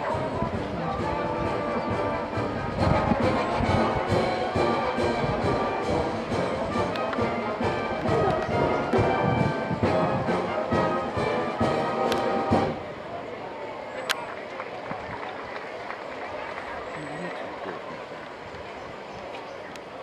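Live band music playing for Morris dancers, with sharp knocks among it, stopping suddenly about twelve and a half seconds in; after that, the low murmur of a street crowd.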